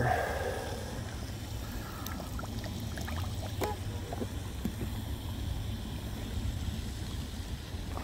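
Quiet outdoor ambience by the water: a steady low rumble with a few light clicks from the plastic boat hull being handled and turned over.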